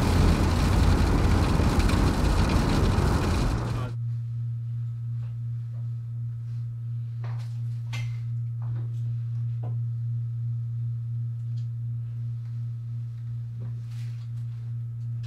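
Inside a car: loud road noise that cuts off abruptly about four seconds in, followed by a steady low hum with a few faint clicks.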